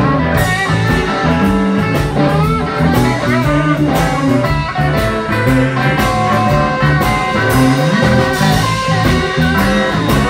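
Live blues band playing through amplifiers: electric guitar with bent notes over bass and a steady beat, without singing.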